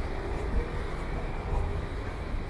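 Steady low rumble of outdoor street noise, with no distinct event standing out.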